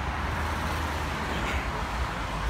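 Steady road traffic noise from cars on the bridge roadway, with a low wind rumble on the microphone.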